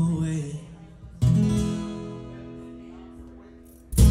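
Acoustic guitar, solo: about a second in, a single strummed chord is struck and left to ring, slowly dying away. A fresh hard strum comes right at the end.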